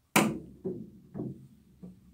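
A pool cue striking the cue ball sharply, then the cue ball knocking off the table's cushions three more times, about half a second apart, as it travels around the rails on a five-rail kick shot.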